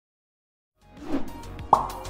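Silence, then a little under a second in an intro sound effect swells up and ends in a single sharp pop, the loudest moment, as background music starts under it.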